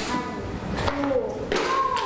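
Loose rocks rattling in a plastic bowl as it is handled and set down on a scale, with a few short knocks, under faint voices.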